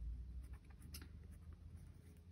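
Colored pencil scribbling on sketchbook paper: faint, quick scratching strokes.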